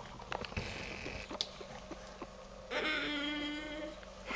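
A baby's steady, held vocal hum lasting just over a second near the end, after a few light clicks of a plastic spoon against the bowl.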